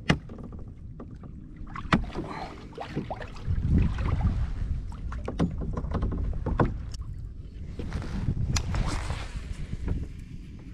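Plastic fishing kayak moving through the water, water washing and lapping along the hull, with wind buffeting the microphone from about a third of the way in. A few sharp knocks of gear against the hull.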